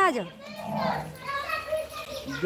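Speech only: a woman's voice ending a word at the start, then quieter talking voices.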